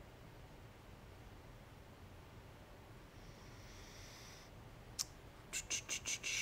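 Quiet room tone with a faint hiss a few seconds in, then a sharp click about five seconds in and a quick run of clicks just before the end.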